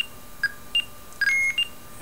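Homemade Arduino blue box's speaker sounding about five short electronic tones at two or three different pitches as digits of an area code are keyed in its IMTS ANI mode, one tone held a little longer about two-thirds of the way through.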